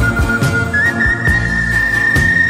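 Pop-song instrumental with a high wooden flute carrying the melody: it holds one note, slides up to a higher note about a third of the way through and holds that. Underneath runs a band accompaniment with a steady drum beat and bass.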